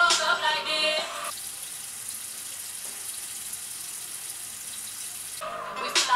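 Background music breaks off about a second in, giving way to a steady hiss of water running, as from a bathroom tap. The music comes back just before the end.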